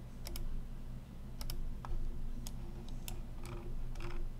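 Several sharp clicks of a computer mouse and keyboard at irregular intervals, over a steady low hum.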